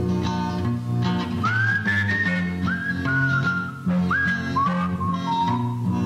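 A whistled melody over guitar and bass in a country song's break, several phrases starting about a second and a half in, each note scooping up into pitch and then sagging a little.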